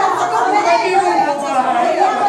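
A crowd chattering: many voices talking and calling out over one another at once, with no single speaker standing out.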